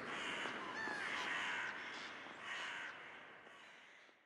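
Faint crow caws over a soft hiss, fading out about three seconds in as the track ends.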